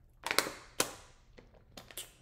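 Thin plastic water bottle crackling as it is squeezed and crumpled in the hand: three loud crinkles, about a third of a second in, just under a second in, and near the end.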